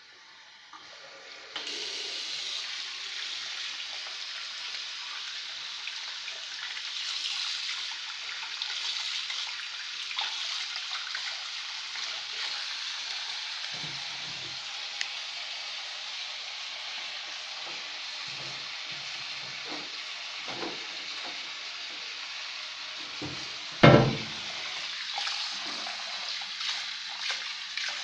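Tap water running steadily into a sink, starting about a second and a half in, with a few faint knocks and one loud thump near the end.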